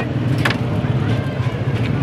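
Steady low hum of background machinery or traffic, with a few short clicks and scrapes of hands and utensils on a steel tawa griddle, the sharpest about half a second in; faint voices behind.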